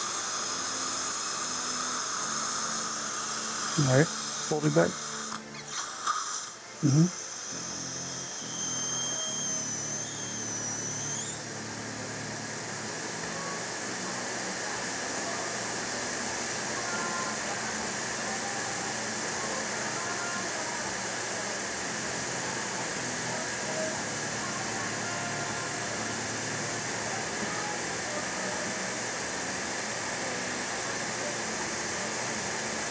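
Steady hiss of a dental suction tip in the mouth, with a dental handpiece whining for about three seconds a little before ten seconds in. Earlier, a few short, loud sounds slide in pitch at about four, five and seven seconds.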